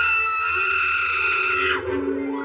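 Cartoon cat's high-pitched, sustained scream of fright, dropping off near the end, over a steady orchestral underscore.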